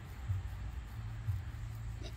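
Quiet outdoor background: a low, uneven rumble on the microphone and a faint hiss, with no voices.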